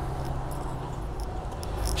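Steady low hum of an idling truck engine heard inside the cab, with a few faint clicks in the second half.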